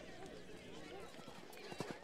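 Faint galloping horse hoofbeats, a horse-race sound effect, with a few sharper hoof strikes near the end.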